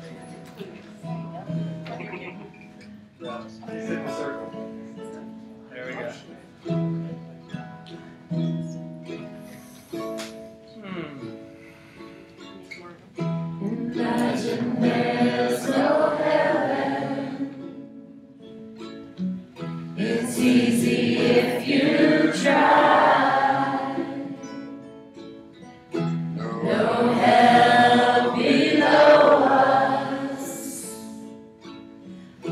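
A congregation singing a song together in unison, with a plucked string instrument accompanying. The first dozen seconds are quieter, mostly the instrument, and then the group singing swells in three loud phrases.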